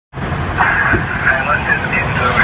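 Low, steady rumble of vehicle engines and road traffic, with faint distant voices.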